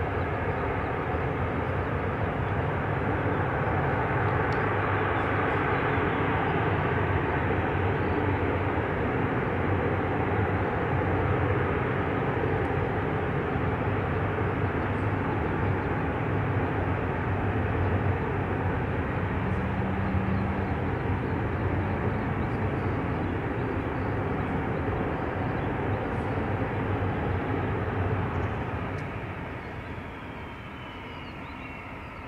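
Military aircraft engines running, a steady loud engine noise that eases off near the end.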